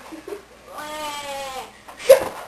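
A single drawn-out whining cry from a voice, about a second long, its pitch sagging slightly near the end.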